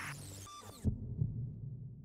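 Intro sound effect: a hissing swoosh dies away, then two low heartbeat thumps about a second in, over a low hum.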